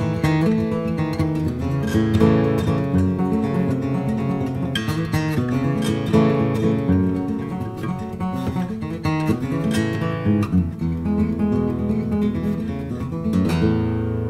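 Baritone five-string LOJO, a large spruce-top guitar body strung with five strings tuned A E A C♯ E, fingerpicked in five-string banjo style: a steady run of plucked notes.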